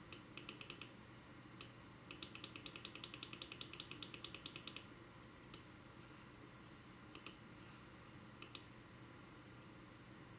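Faint clicking of a computer mouse button. It opens with a short run of quick clicks, then a longer run of about eight clicks a second lasting nearly three seconds, followed by a few single and paired clicks.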